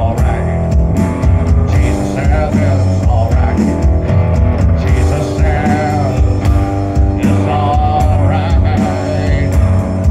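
Live rock band playing: electric guitar over an upright bass line and a drum kit keeping a steady beat.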